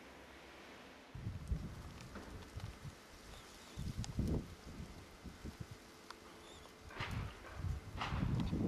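Wind buffeting the camera's microphone in irregular low rumbles and thumps, starting about a second in, over a steady faint hiss.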